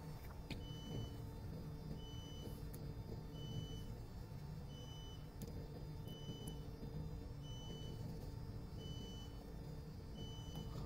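Faint, short, high electronic beep repeating about once a second, over a steady low hum of shipboard machinery.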